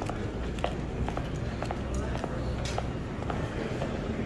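Footsteps on a hard terminal floor at a walking pace, about two steps a second, over a low steady hum and the murmur of voices in the concourse.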